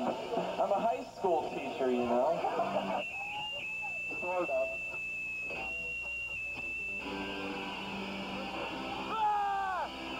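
Voices on a lo-fi videotape recording. After a sharp cut about three seconds in, a steady high-pitched whine runs for about four seconds over people talking, and a loud falling shout comes near the end.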